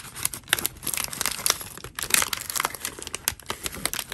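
Paper crinkling and rustling as a translucent paper bag is handled and the paper cards inside are pulled out: a dense, irregular run of sharp crackles.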